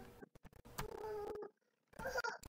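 Computer keyboard keys clicking as a chat message is typed and sent, with a short, steady-pitched drawn-out sound lasting about a second in the middle.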